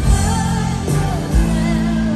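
A live pop ballad heard from within a stadium crowd: a woman singing over piano, with sustained bass notes and a few drum beats.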